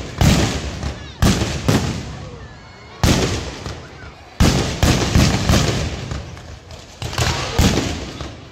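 Fireworks and firecrackers packed around a Ravana effigy going off: about ten loud bangs at irregular intervals, some in quick pairs and runs, each trailing off in a rumbling echo.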